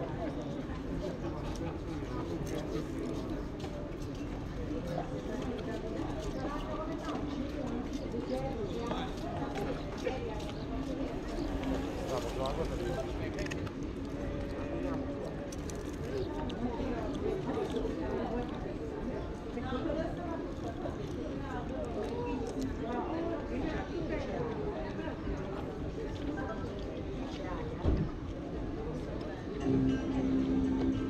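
Indistinct voices in the background with the small scrapes and clicks of a knife and fork cutting meat on a wooden serving board; one sharper knock near the end.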